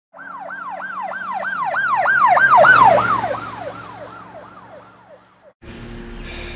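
Police siren wailing in a fast up-and-down yelp, about four sweeps a second. It grows louder to a peak about three seconds in, fades, and cuts off suddenly just before the end.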